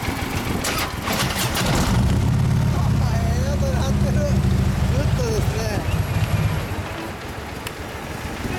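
Harley-Davidson Ultra Limited V-twin running, with what is titled as a Vance & Hines exhaust: it idles, grows louder for a few seconds from about two seconds in, then falls back to idle near the end.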